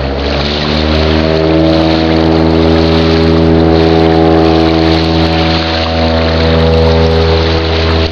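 Light propeller plane's engine running with a steady, loud drone, swelling and rising a little in pitch over about the first second, then holding even.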